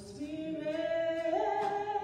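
A woman singing a slow hymn into a microphone, holding long notes, her voice stepping up in pitch a little past halfway through.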